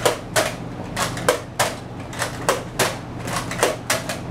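Nerf blaster firing foam darts in quick succession, a sharp snap about three times a second, about a dozen shots.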